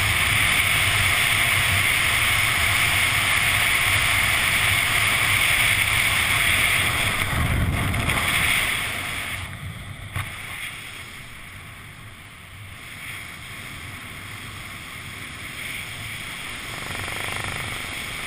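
Wind rushing over a skydiver's camera microphone during a fast descent, loud and steady, then dropping sharply about nine seconds in to a much quieter wind once the flight slows under the open canopy. A single short knock comes just after the drop.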